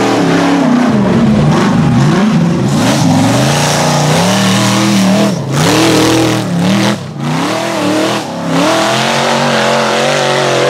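Rock bouncer buggy's supercharged 6.0 engine revving hard under load on a steep dirt hill climb, the revs rising and falling over and over, with a few brief lift-offs in the second half.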